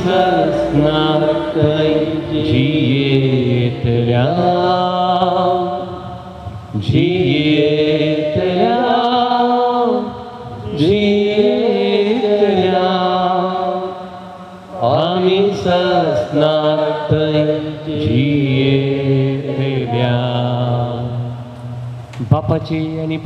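A single voice sings a slow liturgical chant in long, held, bending notes over a steady low drone. The phrases break briefly at about four, ten and fourteen seconds in.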